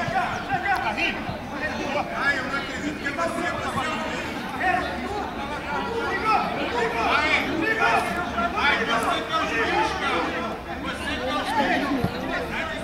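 Chatter of several voices talking and calling out over one another, steady throughout and busiest in the second half.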